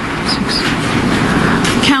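Speech, faint and partly buried under a steady rush of noise from a poor-quality recording.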